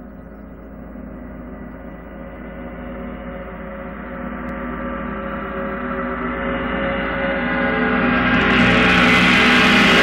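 A gong swelling in a long, steady crescendo, its shimmering overtones growing louder and brighter over the last few seconds.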